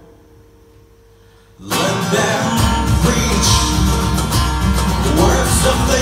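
Live acoustic band music: a short hushed pause with a faint held note, then about two seconds in the band comes back in loudly together, led by strummed acoustic guitars, with a steady low beat joining a second later.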